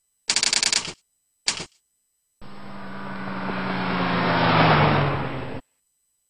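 Logo-animation sound effects: a half-second rattle of rapid clicks, one short click-burst, then a car engine sound swelling for about three seconds, dropping slightly in pitch at its loudest and cutting off suddenly.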